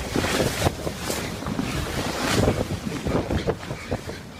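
Strong wind rushing and buffeting the microphone in loud, uneven gusts, easing a little near the end.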